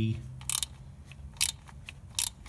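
Ratchet spanner clicking in short, sharp clicks about a second apart, about half a second in and again around a second and a half, as the nuts on the EGR pipe flange of a Toyota 1GD-FTV diesel are tightened.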